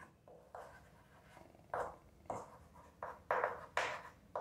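Chalk writing on a chalkboard: about six short scratching strokes, irregularly spaced and coming faster in the second half as the words are written.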